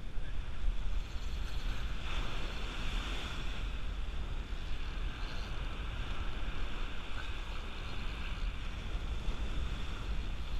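Small ocean waves breaking and washing up a sandy beach, a steady rush, with wind rumbling on the microphone.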